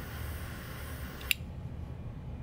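Butane torch lighter's jet flame hissing steadily, then shut off with a sharp click a little over a second in.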